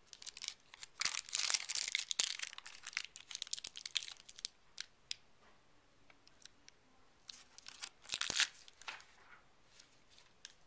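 Oil-based modelling clay being pulled apart by hand and set down on a steel scale pan, a crackly tearing with quick clicks. It comes in a long burst from about a second in and a shorter one near the end.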